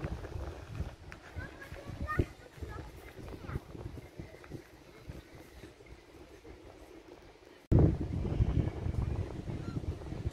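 Outdoor ambience: indistinct distant voices and wind rumbling on the phone's microphone. About three-quarters of the way through, an edit brings in a much louder stretch of wind rumble on the microphone.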